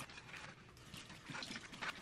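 Dishes being washed by hand in a stainless steel sink: a mesh scrubber rubbing over a ceramic plate, with water running from the tap and a few light knocks of dishware.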